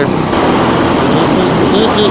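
Steady riding noise from a motorcycle moving through traffic: wind rushing over the microphone with the engine running beneath it. A faint muffled voice comes in near the end.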